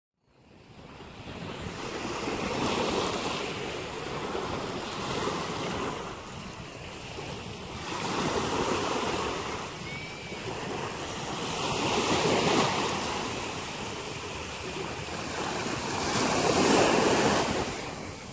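Waves breaking and washing onto a beach, swelling and falling away every few seconds, with wind buffeting the microphone. The sound fades in during the first second.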